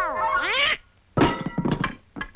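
Cartoon soundtrack: a quick swoop down and back up in pitch, then after a brief silence, about a second in, Donald Duck's loud, raspy, sputtering angry squawk.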